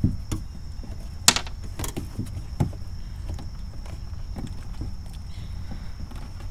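Scattered small clicks and scrapes of a dash cam cable and long plastic zip tie being pushed and worked through the rubber wiring boot between a hatchback's body and tailgate. The sharpest click comes a little over a second in. A steady low rumble and a faint steady high whine sit underneath.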